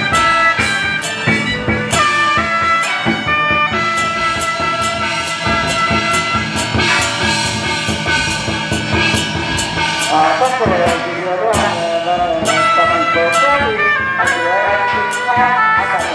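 Music with brass and drums on a steady beat, played loud for a procession dance of giant deity puppets.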